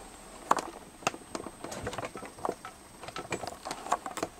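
Irregular soft clicks and light taps, a dozen or so spread unevenly over the four seconds: handling noise from the camera as it is zoomed in.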